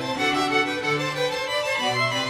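String orchestra playing a slow, flowing passage of held notes, violins carrying the melody over cellos and a bowed double bass.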